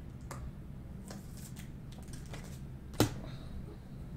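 Panini Prizm basketball cards being flipped and slid against each other in the hands, a run of light clicks and rustles, with one sharp, louder click about three seconds in.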